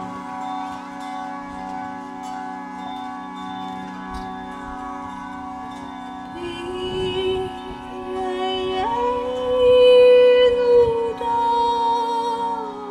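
A steady drone from a tanpura and harmonium. About six seconds in, a woman's voice comes in with long held sung notes, stepping up in pitch and growing louder near the end.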